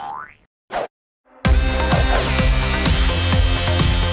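Channel intro jingle: a short rising pitched glide and a brief sharp hit, a moment's silence, then loud electronic music from about a second and a half in, with a falling synth sweep soon after.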